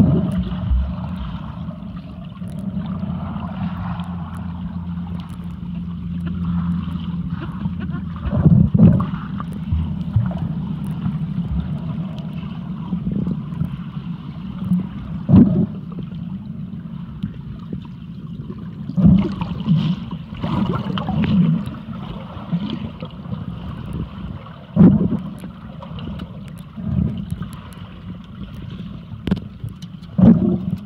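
Muffled underwater sound picked up by a submerged camera: a steady low rumble of moving water, with about seven short louder surges of swirling water and thumps scattered through it.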